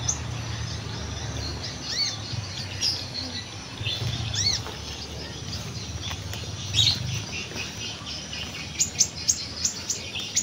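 Small birds chirping: several short, arched high notes spaced a second or two apart, then a quick run of sharp high chirps near the end.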